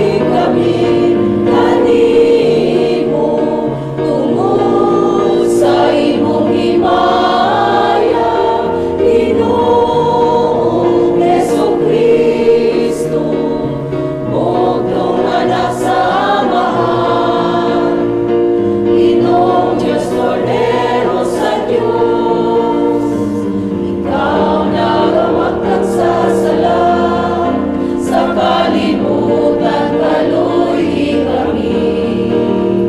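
Church choir of men and women singing a hymn in sustained, flowing chords.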